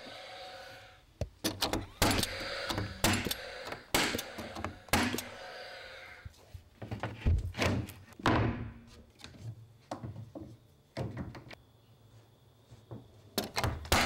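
A nail gun firing nails through plywood sheathing into wooden studs: a quick series of sharp, irregularly spaced shots, thinning out to a few in the second half.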